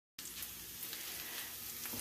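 Faint, steady hiss with a few soft crackles and clicks.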